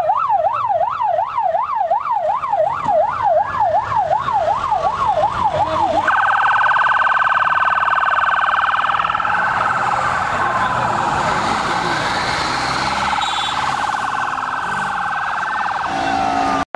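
Police escort sirens: a fast yelp sweeping up and down about two to three times a second, switching about six seconds in to a much faster warble, with a second, slower wailing siren faintly behind.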